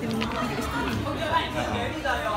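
Chatter: several people talking at once among cafe tables, no single voice standing out.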